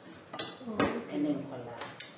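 Kitchen bowls and utensils clinking as they are handled on a counter, with about three sharp knocks.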